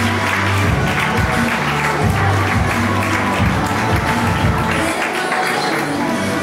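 Audience applauding over music with held, changing bass notes.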